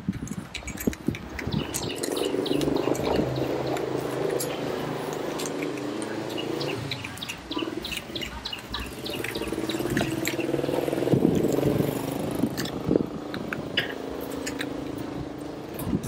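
Motorised sliding gate opening: a steady motor hum with a rattle of the gate running along its track, easing off about twelve seconds in.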